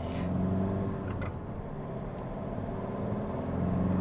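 Kia Stonic's 1.6-litre four-cylinder common-rail diesel heard from inside the cabin, pulling steadily as the car accelerates and rising a little in pitch and loudness toward the end. It has a slight drone, with a light rattle that the driver puts down to the combustion.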